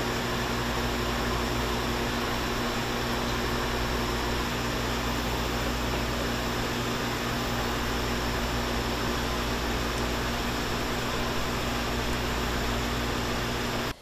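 Sugarhouse machinery running steadily beside a maple syrup evaporator: an even rushing noise with a low, constant electrical hum under it.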